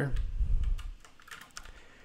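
Computer keyboard typing: a quick run of keystrokes for about a second and a half, then it goes quiet.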